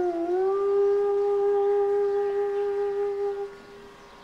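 Bansuri (bamboo flute) holding one long low note that bends down slightly at the start, then stays steady before fading out near the end.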